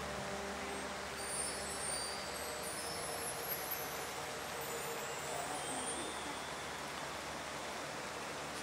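Quiet outdoor ambience between pieces: a steady hiss of light rain with a faint low hum, and a few faint high chirps about two to three seconds in.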